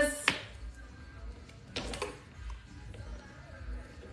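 Quiet handling sounds: a sharp click just after the start, then a few faint knocks and clicks as a knife and a bagged oyster are handled on a wooden cutting board.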